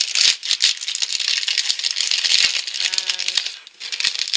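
Foil blind bag being opened and crinkled by hand, a dense, continuous run of crackling and rustling.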